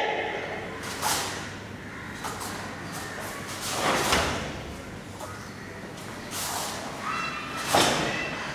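A karateka working through a Goju-ryu kata on foam mats: short swishes and thuds of the gi and bare feet, with forceful breaths. They come as a separate burst every second or two, the strongest about four seconds in and near the end.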